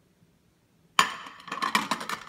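Glass plate set down onto a stack of matching glass plates: one sharp clink with a brief ring about a second in, then a few lighter clinks as it settles.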